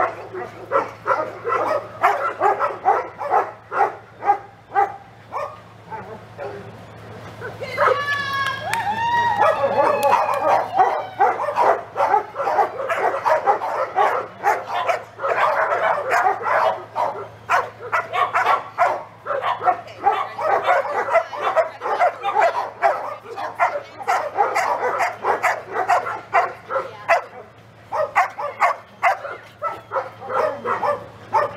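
Dogs barking rapidly and repeatedly, with a high, wavering whine about eight seconds in.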